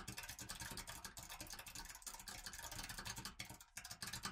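Faint typing on a computer keyboard: a dense, continuous run of light key clicks.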